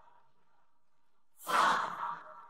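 Near silence, then about one and a half seconds in a sudden, short, loud rush of breathy noise that fades away quickly.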